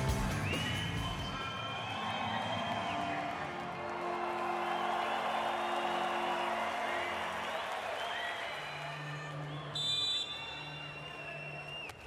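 A national anthem playing over an arena's sound system as sustained held notes, with crowd noise beneath it. A brief bright, high burst comes about ten seconds in.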